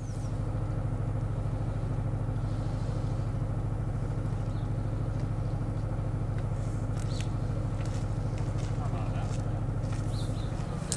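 An engine running at a steady idle: a low, even hum.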